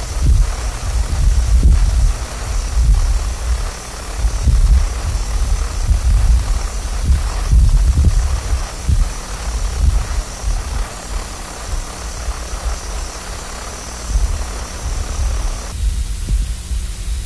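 Blizzard wind gusting and buffeting the microphone: a deep, uneven rumble that swells and drops every second or two, over a steady hiss.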